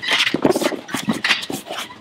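Two men wrestling in a clinch against a padded wall and chain-link cage: irregular scuffling of bodies, clothes and feet, with grunts and strained breathing.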